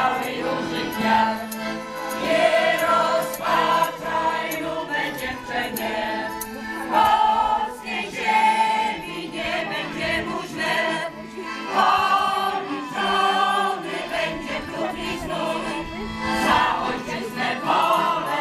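A large choir of folk-ensemble singers singing a song together, many voices at once.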